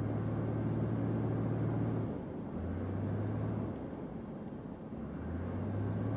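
Small aircraft engine droning steadily, heard from inside the cabin, with a low hum that briefly dips twice.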